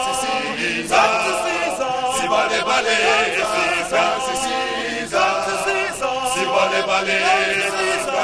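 A male vocal group singing a chant-like song in harmony, several voices together.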